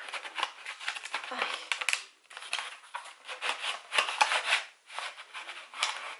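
Cardboard box and plastic tray of a gel nail polish set being handled: a run of scraping and rustling as the tray slides out of its card sleeve, broken by two short pauses.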